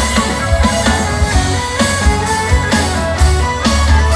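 Folk metal band playing live on an open-air stage: a loud, dense mix with heavy bass, sustained melody lines and a steady drum beat of about two hits a second.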